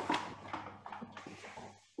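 Faint handling noises from soft dough being lifted from the mixing bowl and put on the kitchen counter, with a few soft knocks over a low steady hum.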